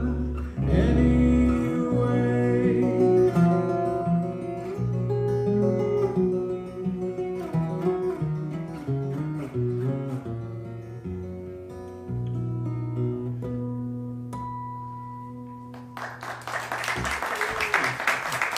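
Baritone acoustic guitar playing the song's closing instrumental passage, ending on notes left ringing and fading away. Audience applause breaks out about two seconds before the end.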